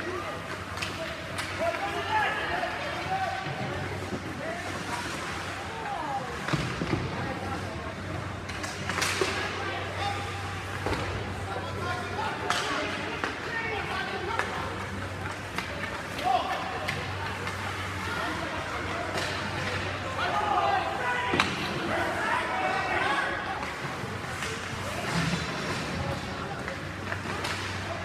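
Ice hockey rink ambience during play: spectators' voices talking in the background, with scattered sharp clacks and knocks of sticks, puck and boards over a steady low hum.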